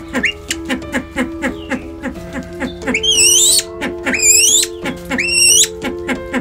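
Male silver pheasant calling three times in the second half, each call a high note that rises and then falls in pitch, about a second apart. Background music with sustained notes and a steady beat plays throughout.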